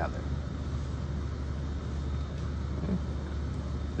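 A steady low background hum runs throughout, with no distinct events, and a single spoken "okay" near the end.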